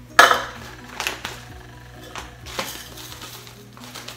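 Measuring cup and spoon knocking against a mixing bowl while brown sugar is scooped and tipped in: one loud clatter about a quarter second in, then a few lighter knocks.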